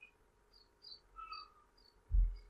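Near silence: faint room tone with a few brief, faint high chirps scattered through it.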